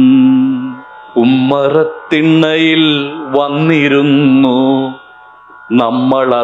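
A man singing verses of a Malayalam poem in a slow, chant-like tune, holding long wavering notes. He pauses briefly between phrases, about a second in and again near the end.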